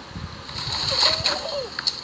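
A person falling out of a tree and crashing down through branches onto dry leaves and brush, with voices calling out.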